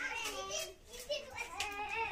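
Children's voices chattering, high-pitched, with a brief lull just before a second in.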